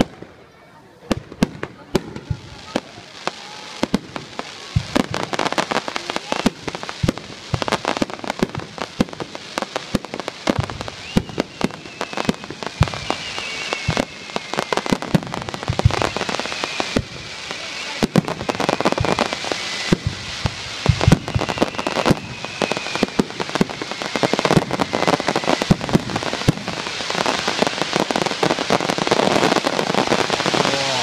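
Starmine fireworks barrage: a rapid run of shell launches and bursts, sharp bangs and crackles following one another several times a second. It grows denser and louder toward the end.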